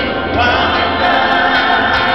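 Gospel vocal group of men and women singing together in harmony through microphones and loudspeakers.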